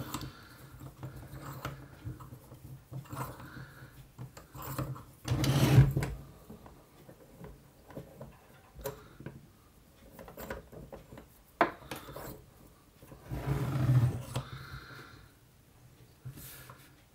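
Handling noise from an air rifle's action and a sash clamp being shifted on a wooden workbench: scattered knocks and rubbing, with two louder, drawn-out noises about five seconds in and near the end.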